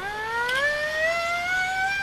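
A single pitched tone with overtones, gliding steadily upward in pitch like a siren winding up.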